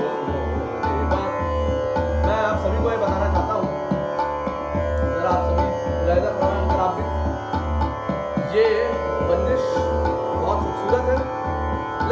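Hindustani classical accompaniment with no voice: a steady tanpura drone and plucked-string figures over an even tabla beat about twice a second.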